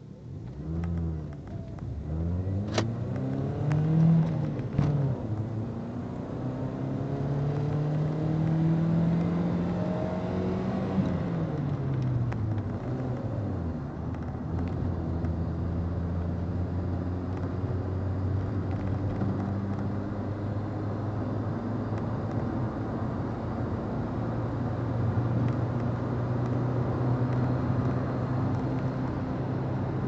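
VW Gol G3 engine heard from inside the cabin as the car pulls away. The revs climb, drop, climb again and fall back over the first dozen seconds, then hold fairly steady. There are a couple of sharp clicks in the first few seconds.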